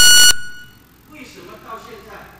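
Electronic buzzer beep, a steady high tone with overtones, cutting off about a third of a second in and ringing out briefly; faint, distant voices follow.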